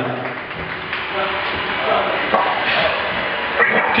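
Indistinct talking in a hall, with a few scattered knocks and taps.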